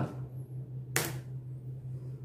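A single sharp computer mouse click about a second in, over a steady low hum.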